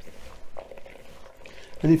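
Gloved hands mixing minced beef and diced onion in a bowl: faint, irregular soft squishing and rustling. A man starts speaking near the end.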